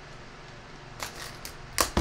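Small cardboard card box being slit open with a blade and handled: a few short clicks and scrapes from about a second in, with a sharper click near the end.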